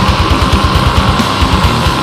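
Death metal recording: dense, loud guitar-driven metal over a rapid, even low drum beat.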